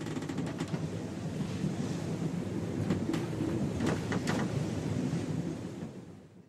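Ocean surf and wind sound effect: a steady rushing wash with a couple of brief swells about three and four seconds in, fading out at the end.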